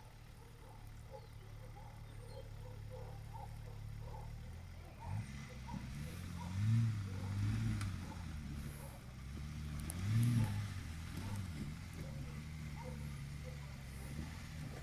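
Range Rover P38 engine running low under load as the vehicle climbs over rocks, revved up and back down in several bursts, the loudest about seven and ten seconds in.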